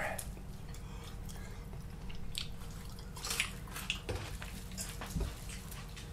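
A man chewing and eating a hot chicken wing: quiet mouth noises with a few soft, short smacks or clicks spread through, over a steady low room hum.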